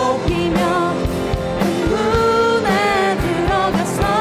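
A worship team singing a Korean contemporary praise song in Korean, with a live band of drum kit, keyboard and guitar keeping a steady beat.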